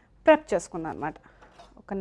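A woman's voice speaking briefly in the first second, then a pause.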